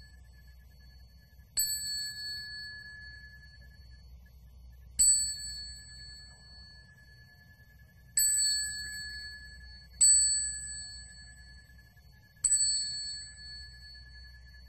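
Small Buddhist bowl-shaped hand bell (yinqing) struck five times at uneven intervals, each strike a clear high ring that fades over a second or two, marking the prostrations of a monastic service. A faint low hum runs underneath.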